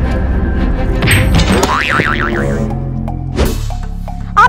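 Background music with a comic wobbling 'boing' sound effect, a tone that warbles up and down about two seconds in. A short whoosh follows near the end.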